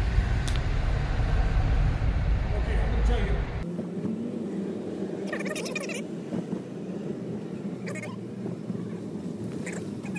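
Cabin noise of a car driving slowly: a low, steady rumble that drops away abruptly about three and a half seconds in, leaving a softer road hum with a few brief faint sounds.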